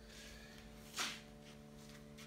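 Quiet room tone with a steady low hum and one brief soft hiss about halfway through.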